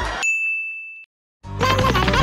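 Music cuts off and a single high, bell-like ding sound effect rings for just under a second, followed by a moment of silence before music starts again.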